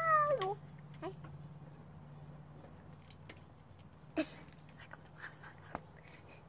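A young boy's high, wavering wail made through a mouth stretched wide with his fingers; it slides up and then breaks off within the first half-second. After that, only a steady low hum with a few faint clicks and short squeaks.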